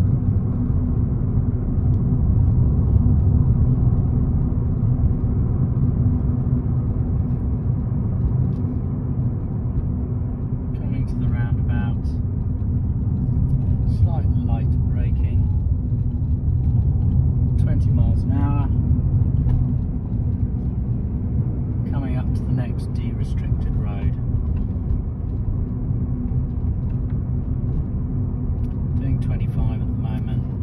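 Steady low rumble of a Ford car's engine and tyres heard from inside the cabin while cruising at a steady speed.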